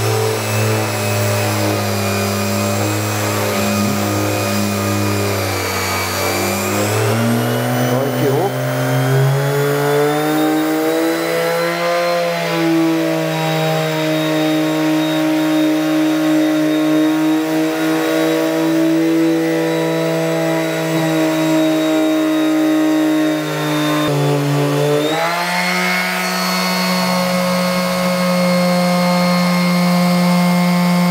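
Einhell TE-OS 2520 E electric orbital sheet sander running on speed setting 3 with 60-grit paper, sanding a painted wooden panel; really loud, a steady motor hum with a buzzing edge. Its pitch climbs from a lower hum to a higher one between about six and ten seconds in, dips briefly near twenty-five seconds and comes back up.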